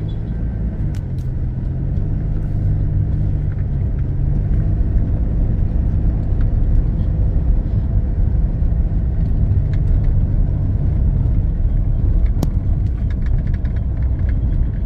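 Car engine running at low speed and tyres rolling over a street of interlocking paving blocks, heard from inside the car as a steady low rumble. There is one sharp click about twelve seconds in.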